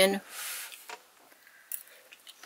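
The end of a woman's spoken word, then a short breathy hiss and a few faint small clicks as she takes a bite and chews.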